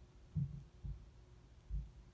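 Three dull, low thumps, the first the loudest, over a faint steady hum: knocks or impacts heard muffled, as through a wall or floor.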